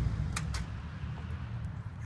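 Pickup truck engine idling low and steady after a log drag, with two sharp clicks about half a second in as the driver's door latch opens.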